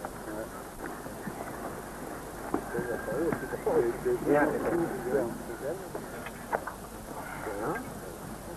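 Indistinct voices talking in short scattered bursts, too unclear for words to be made out, over a steady hiss.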